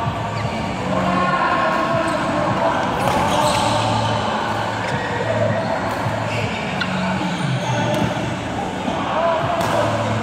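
Badminton play in a large sports hall: scattered sharp racket hits on shuttlecocks and shoes squeaking on the court floor, with players' voices in the background, all echoing in the hall.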